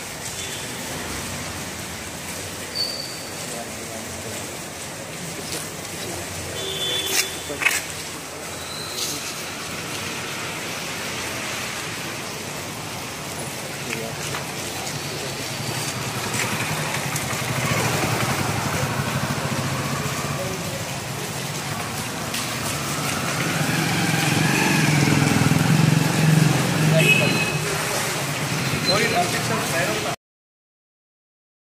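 Background voices over street traffic noise, with a few sharp clicks about seven seconds in. The voices and noise swell louder in the second half.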